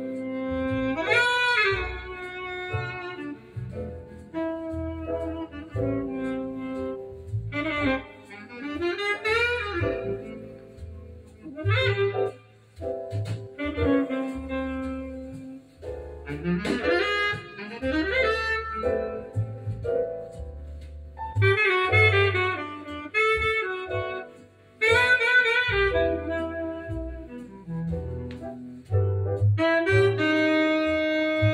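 Instrumental break of a slow vocal jazz ballad playing from a vinyl record on a turntable: a single lead melody with sliding, scooped notes over a bass line.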